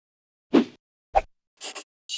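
Title-sequence sound effects: a plop about half a second in, a sharp short knock just after a second, and two quick high swishes near the end.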